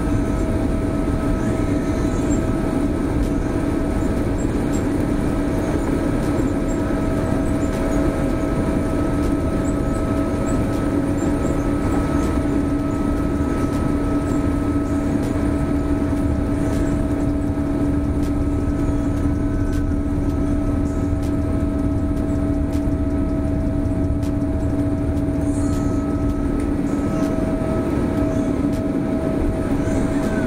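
Boeing 787-8 Dreamliner's jet engines at takeoff thrust, heard from inside the cabin during the takeoff roll: a steady, loud rumble with a steady hum running through it.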